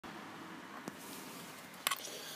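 Faint hiss of a quiet truck cab, with a single soft click just under a second in and a brief jangle of keys near the end.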